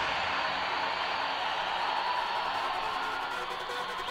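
Breakdown in a techno DJ mix: the kick drum and bass have dropped out, leaving a soft, hissing noise wash with a faint held tone.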